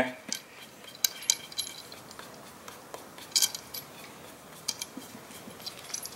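Scattered light clicks and taps as a wooden table leg is turned on a stool and brushed with paint.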